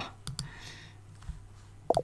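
A few short clicks from a computer mouse or keys, about a quarter to half a second in, then quiet room tone.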